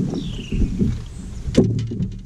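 Knocks and thuds of people moving about on a bass boat's deck, with one sharp knock about one and a half seconds in. A faint falling whistle sounds near the start.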